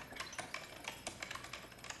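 Noisy computer-keyboard typing: a quick, uneven run of key clicks.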